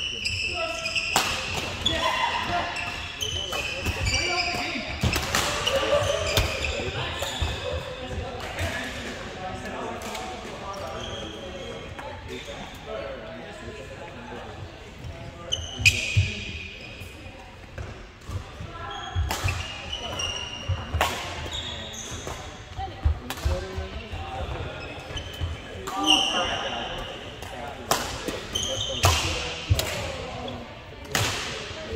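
Badminton play on a wooden sports-hall floor: sharp racket strikes on the shuttlecock, sneakers squeaking on the court, and players' voices around the hall.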